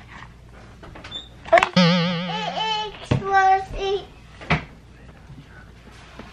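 A toddler's voice: a wavering, warbling call about two seconds in, then a shorter call, with a few sharp knocks in between.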